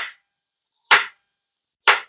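Kitchen knife slicing through a red potato and striking a wooden cutting board: three sharp chops about a second apart.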